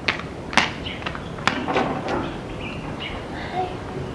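A few sharp knocks and clicks, the clearest near the start, just after half a second and at about one and a half seconds, with faint bird chirps behind them.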